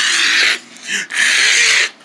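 A person hissing: two loud breathy hisses, a short one at the start and a longer one about a second in.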